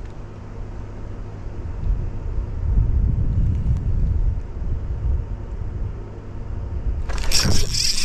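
A steady low rumble with a faint hum runs throughout and swells in the middle. About seven seconds in, a sudden rush of noise with a high whine starts as the spinning reel is raised and cranked on a bite.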